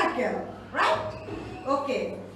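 Short spoken utterances, about three brief words or calls with pitch sliding up and down.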